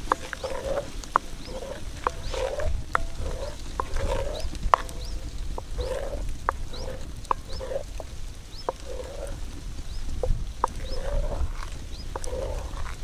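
Wooden spoon stirring a thin cream, milk and corn-grits mixture in a cast-iron cauldron, with wet sloshing strokes in a steady rhythm of about two a second. Scattered sharp clicks sound between the strokes.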